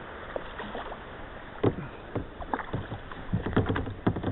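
Kayak paddling: splashing strokes and sharp knocks of the paddle against the kayak hull, beginning a little over a second in and coming thick and fast near the end.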